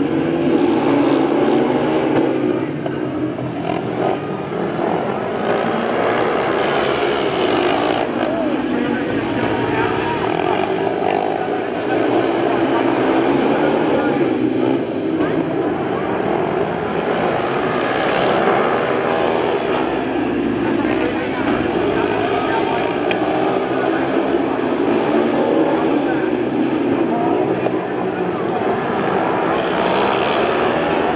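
Several speedway bikes' 500 cc single-cylinder methanol engines racing round a dirt oval, several at once, their pitch wavering up and down as the riders accelerate down the straights and back off into the turns.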